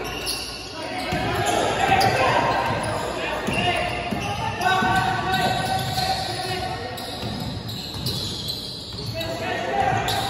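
Basketball being dribbled on a hardwood gym floor, a run of bounces echoing in a large hall, with players' voices calling out over it.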